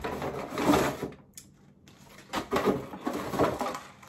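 Rustling and scraping of a cardboard box and the packaged items inside as a hand rummages through it, in two bursts: one in the first second and a longer one from a little past the middle.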